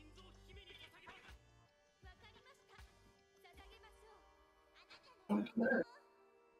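Anime episode soundtrack playing: quiet background music under Japanese character dialogue, then two loud, short vocal cries near the end.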